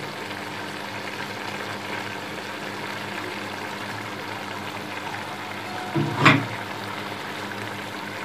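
Minced beef keema simmering in a steel pot, a steady bubbling hiss, while a cup of cooking oil is poured in. A single knock about six seconds in.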